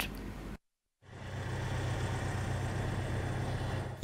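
A steady engine hum with outdoor background noise. It fades in about a second in, after a brief gap of silence.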